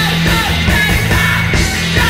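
Live rock band playing at full volume: a drum kit with steady hits under electric guitars and bass.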